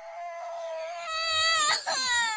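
A baby crying in one long wail that grows louder about a second in.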